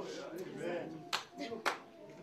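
A few scattered hand claps, about three sharp ones spread across two seconds, over faint background voices.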